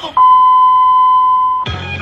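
A loud, steady electronic beep, one pure high tone held for about a second and a half that cuts off abruptly, of the kind used as a censor bleep; music with a bass line starts right after it.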